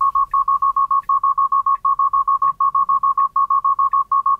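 Tesla Model 3 Autopilot take-over-immediately alarm: a high electronic beep repeating in quick bursts of five, about one burst every three-quarters of a second. The car is demanding that the driver take over because Autopilot cannot find the lane lines.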